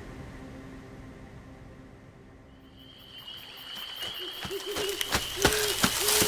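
A music cue fades out, and outdoor night ambience comes up: a steady high insect trill enters about halfway through, then short low frog croaks repeating about every half second, with a few sharp thumps near the end.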